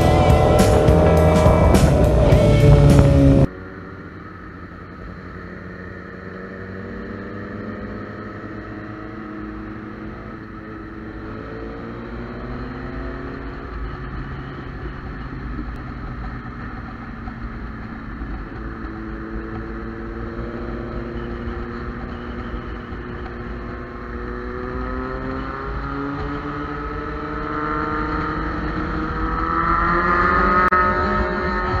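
Music with a steady beat, cutting off abruptly a few seconds in. Then a sport motorcycle's engine running under way, its revs rising and falling repeatedly through gear changes, climbing and getting louder near the end.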